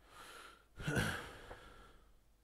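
A man's breathy exhale, then a short laugh about a second in.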